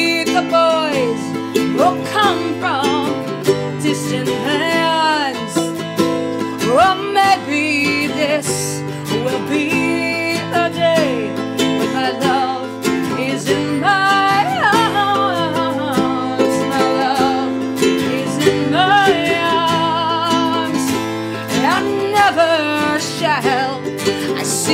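Music: a strummed acoustic guitar and ukulele playing a folk ballad, with a woman's voice singing the melody throughout.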